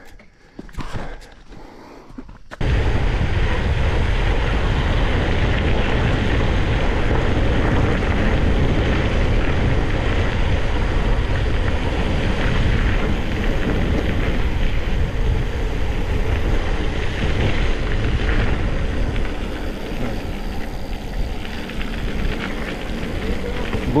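Wind blowing across the camera microphone, mixed with mountain bike tyre rumble on a dirt road. It starts suddenly about two and a half seconds in, after a short quieter stretch, and stays loud and steady.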